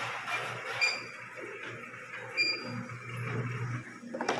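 Tomato sorting machine running: a steady low motor hum from the roller conveyor and its mounted fan, with a few short high squeaks.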